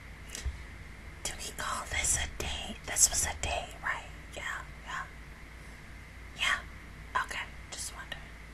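A woman whispering to herself in short, quiet bursts, with a pause in the middle.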